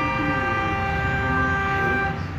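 A horn sounding one long, steady note.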